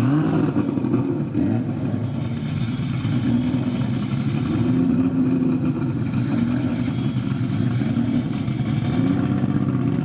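Drag race car engines running at the start line, idling unevenly with a quick rev right at the start and a few short throttle blips later on.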